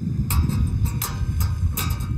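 Wind buffeting the microphone: a loud, uneven low rumble with a few brief crackles.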